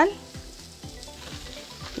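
Nopal cactus paddles sizzling gently in a lightly oiled frying pan as they roast.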